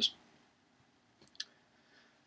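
The tail of a spoken word, then a pause in room tone with two or three faint, short mouth clicks about a second and a quarter in, like a speaker's lips or tongue parting before he goes on.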